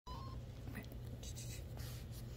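Short scratchy rustles of a kitten's claws and paws on carpet, a few in the second half, over a low steady hum.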